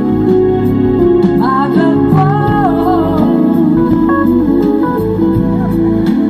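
A live band playing an instrumental passage through a PA: keyboards, bass and drums under a lead melody that bends in pitch from about a second and a half in to about three and a half seconds.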